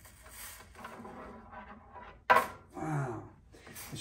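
Steel tongs tapping and scraping against a freshly poured silver bar in a graphite ingot mold, with light taps and then one sharp clink a little over two seconds in. A brief murmur of a voice follows the clink.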